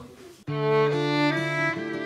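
A violin and an acoustic guitar start a song's instrumental introduction about half a second in. The violin bows a sustained melody over held lower notes.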